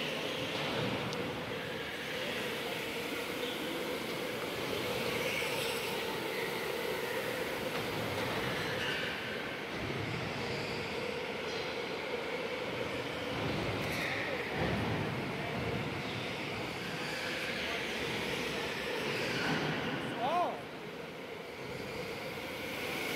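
Electric go-karts running laps on an indoor concrete track: a steady electric-motor whine mixed with tyre noise, with a short rising whine near the end as a kart accelerates past.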